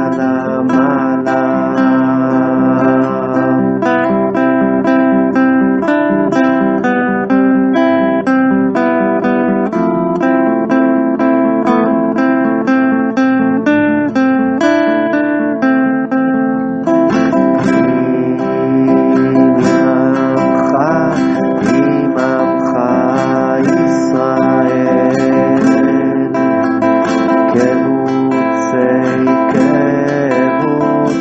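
Acoustic guitar strummed in a steady rhythm, accompanying a niggun, a devotional Jewish melody. Voices singing along come through more clearly in the second half.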